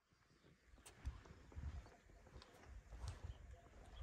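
Near silence, broken by a few faint, low thumps at uneven intervals.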